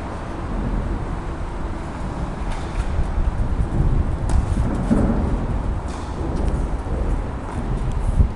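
Steady low rumble of room and microphone noise in an indoor tennis hall, with a few faint ball strikes. One comes about four seconds in as a serve is hit.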